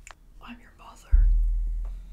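Faint whispering from a horror film's soundtrack, then a sudden deep boom about a second in that fades away over the next second.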